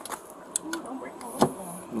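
A car's power window motor raising the driver's window, with two sharp clicks and faint low mumbling.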